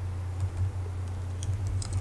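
Computer keyboard typing: faint, quick key clicks that come thicker in the second half. A steady low hum runs underneath.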